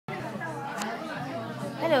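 People talking in a restaurant dining room, ending with a man saying "Hello".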